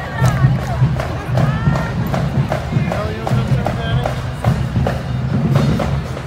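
Marching band music with a steady, driving drum beat, with crowd voices and shouts over it.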